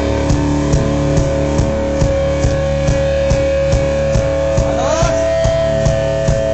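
A live rock band playing: electric guitar and bass holding long notes over a steady drum beat of about two hits a second, with one note sliding upward about five seconds in.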